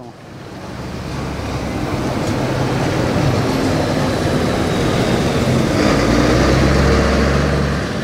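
Street traffic dominated by an old Mack truck's diesel engine driving past close by. It grows louder over the first couple of seconds, holds steady, and adds a deep low rumble near the end as the truck goes by.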